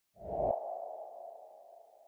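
Logo-animation sound effect: a whoosh with a brief low rumble about a fifth of a second in, settling into one sustained tone that slowly fades.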